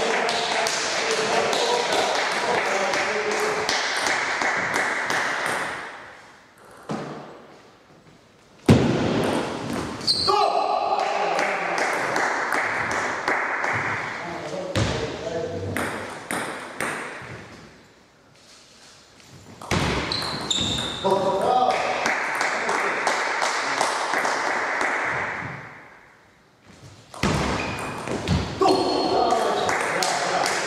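Table tennis ball clicking off the table and rackets in quick succession during rallies, echoing in a large hall, with people's voices around. The sound drops away briefly three times, and one sharp loud knock comes a little under a third of the way in.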